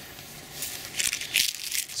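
Dry, frost-damaged yacon leaves rustling and crinkling as a hand brushes through them, in a few irregular bursts over the second half.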